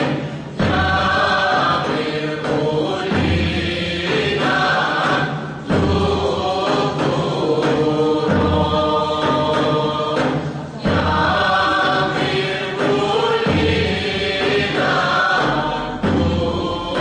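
A group of voices sings a Greek folk dance song in long phrases, with short breaks about every five seconds.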